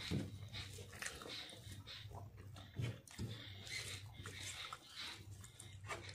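Faint sounds of eating by hand: chewing and mouth noises with fingers working rice on a metal plate, as irregular short clicks and smacks over a steady low hum.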